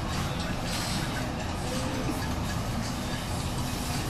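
Steady restaurant dining-room noise: a low rumble with indistinct voices and background music.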